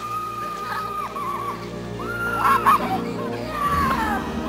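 A child's high-pitched squeals while sledding: one long held squeal at the start, then short wavering cries and a burst of higher shrieks about two seconds in.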